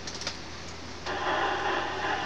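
CB radio receiver static: a few faint clicks, then about a second in a steady rush of static comes on suddenly as the receiver opens to the other station's incoming transmission.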